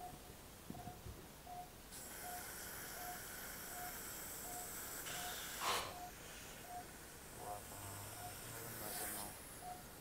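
Operating-theatre patient monitor beeping steadily, a short tone about every three-quarters of a second. A powered surgical drill whirs for about four seconds, stops sharply with a brief clatter, and runs again briefly near the end.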